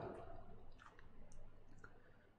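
Faint, scattered clicks and taps of a stylus writing on a tablet.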